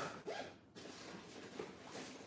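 Faint rustling and scraping handling noises: a few short scuffs, most of them in the first half second.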